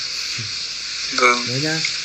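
Steady, even hiss of background noise on a phone-call recording, under a single short spoken word a little over a second in.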